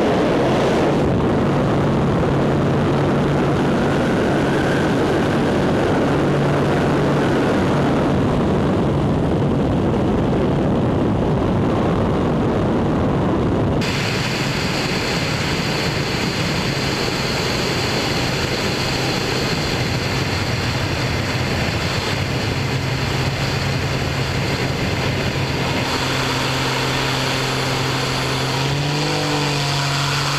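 Pitts Special aerobatic biplane's engine and propeller running steadily, a continuous drone mixed with wind rush on an onboard camera. The sound changes character about fourteen seconds in and shifts in pitch near the end.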